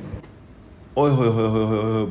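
A couple of faint clicks, then about a second in a man's long, drawn-out exclamation 'oh-ho', the loudest sound here, at a bowl of food too hot to hold.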